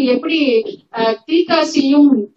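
A woman's voice speaking in Tamil, with a short pause about a second in.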